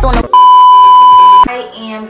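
A loud, steady electronic beep at one pitch, lasting about a second, right after the hip-hop music cuts off; a woman starts talking as it ends.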